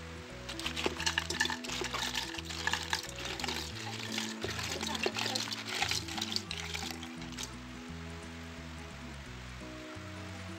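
Wet freshwater snails clattering against each other and the pot as they are tipped from a bowl into a pressure cooker, a dense run of small clicks that stops about seven and a half seconds in, over background music.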